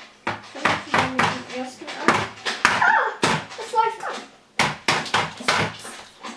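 Eggs knocked against a mixing bowl and cracked, then forks clinking and scraping in the bowl as the butter, sugar and eggs are stirred together: a run of short sharp knocks.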